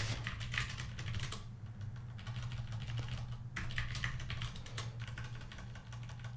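Typing on a computer keyboard: irregular key clicks, over a low steady hum.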